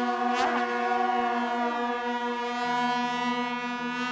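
Shaojiao, the long brass horns of Taiwanese Mazu processions, sounding one long, steady note. A brief falling slide in pitch comes about half a second in, and a lower note comes in and out near the end.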